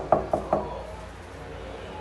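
Knuckles rapping quickly on a wood-grain door, a short run of about four knocks some 0.2 s apart, over within the first half second.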